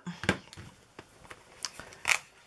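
Plastic shrink-wrap on a boxed set of watercolour tubes crinkling, with a few separate crackles and clicks, as it is pulled off by hand.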